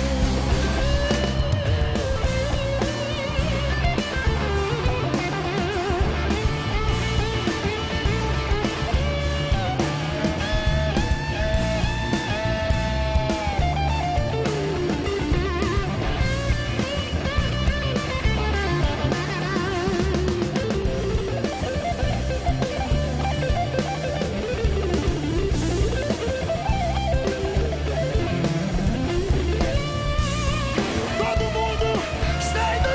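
Live band playing an instrumental passage: an electric guitar leads over bass and drums, its notes bending and sliding in pitch.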